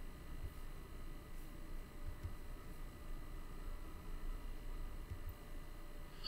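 Faint room tone: a steady low hiss and hum from the recording microphone, with a few soft low thumps.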